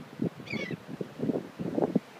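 A dog digging in dry sand with its front paws: a quick, uneven run of scratchy scrapes. A short high-pitched call sounds about half a second in.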